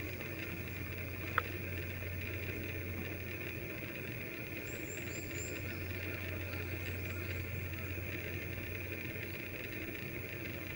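Steady outdoor background hum and hiss while the golfer sets up over the ball, with one short sharp click about a second and a half in and a few faint high chirps around the middle.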